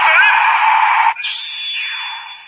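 Kiramai Changer Memorial Edition toy's small speaker playing a tinny, voice-like sound effect with no bass, which cuts off a little past a second in and leaves a faint steady high electronic tone.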